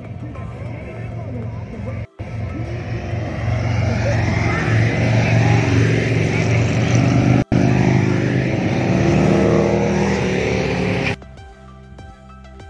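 A group of motorcycles riding up the highway toward the microphone, their engines growing steadily louder as they approach. The sound cuts off abruptly near the end.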